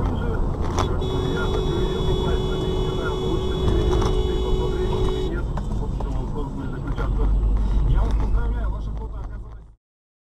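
Vehicle and road rumble, with a steady tone held for about four seconds starting about a second in, and a few sharp clicks. The sound cuts off abruptly near the end.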